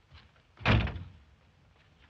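A wooden door slamming shut: one heavy bang about two-thirds of a second in, dying away within half a second.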